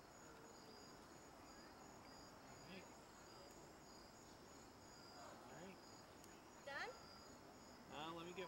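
Faint, steady chirping of crickets in high, evenly pulsed trills, with a short louder sound near the end.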